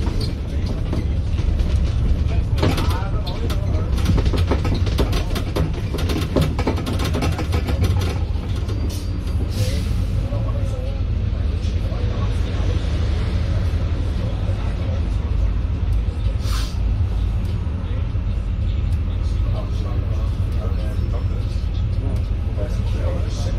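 Inside a Volvo B5LH double-decker bus: the steady low drone of the running drivetrain, with quick rattles and clicks from the bodywork during the first several seconds while the bus is moving. Two brief hisses come later, one about ten seconds in and one about seventeen seconds in, while the bus stands still.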